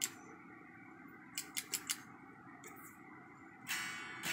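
Faint clicks and taps, then near the end a strum on the bare strings of an electric guitar heard without amplification: the amp stays silent because no signal is getting through the looper pedal.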